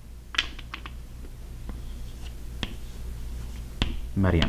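Chalk on a chalkboard as a word is written: a quick cluster of taps and short scrapes about half a second in, then scattered single ticks, the sharpest just before the end, over a steady low room hum.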